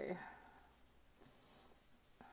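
Faint rubbing of hands smoothing a paper planner page flat against the table.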